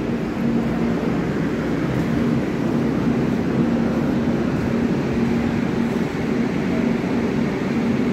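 Passenger express train running: a steady rumble and rush, with a low hum that pulses on and off at an even pace.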